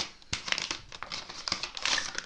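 Gift wrapping paper crinkling and tearing in irregular bursts as a present is unwrapped by hand, loudest near the end.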